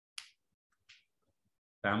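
Near silence broken by two short clicks, the first louder, about a quarter second and a second in; a man's voice starts just before the end.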